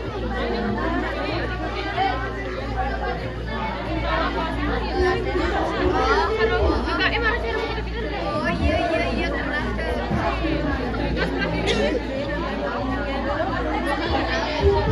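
Several men talking at once, their voices overlapping in close chatter over a steady low hum.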